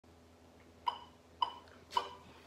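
Metronome clicking at 110 beats per minute: three short, evenly spaced, high-pitched clicks, starting about a second in.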